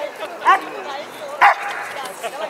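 Husky giving two short, sharp yipping barks about a second apart, the first rising in pitch, over a crowd's background chatter.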